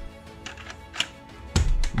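Hard plastic clicks and knocks from a Nerf Shell Strike DS-6 blaster being handled: a single sharp click about a second in and a louder cluster of clacks near the end. Background music plays underneath.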